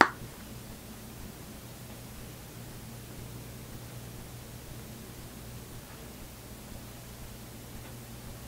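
Steady faint hiss with a constant low hum underneath: room and microphone noise, with no distinct sounds standing out.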